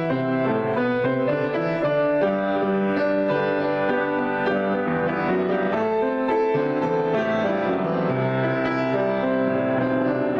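Grand piano being played in a free improvisation: a continuous, even flow of chords and running notes in both hands.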